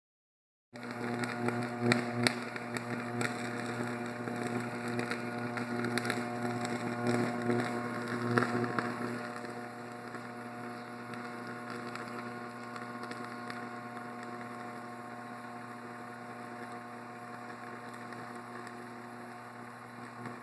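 Damaged, burning high-voltage electrical equipment humming loudly and steadily, with a few sharp cracks in the first half.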